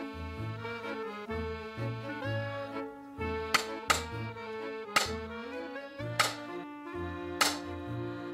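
Background music with sustained chords over a repeating bass note, cut by about five sharp whacks in the second half: a monk's wooden stick striking a dozing meditator's shoulder.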